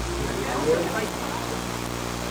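Faint voices talking in the background over a steady low hum.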